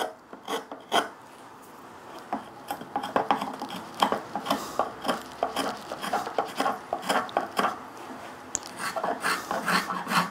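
Flat-soled spokeshave cutting shavings along the edge of a wooden workpiece, in quick repeated strokes of about two or three a second, each a short scrape of blade on wood. A few sharp clicks come first, before the strokes get going.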